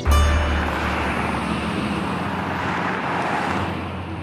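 A car and a lorry driving by on a highway: engine and tyre noise with a deep rumble that starts suddenly, swells as they pass and eases off near the end.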